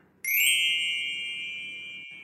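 A single bright ding, struck about a quarter second in and ringing as it slowly fades, then cutting off abruptly: a chime sound effect marking a scene transition.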